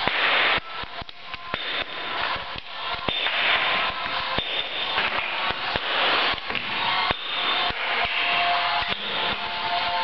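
Hand hammer striking a steel chisel into a stone block in repeated irregular blows, roughly one or two a second, as the stone is cut and dressed by hand.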